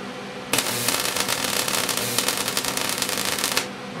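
Solid-state Tesla coil discharging in continuous (non-staccato) mode: a harsh, crackling hiss that starts about half a second in, holds steady for about three seconds and cuts off suddenly.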